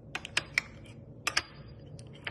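Metal table knife clicking against a ceramic plate while spreading jelly on French toast: a handful of sharp clicks in two quick groups, the second about a second in.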